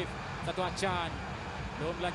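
Quiet football broadcast audio: a commentator speaking in short phrases over a steady background of stadium crowd noise.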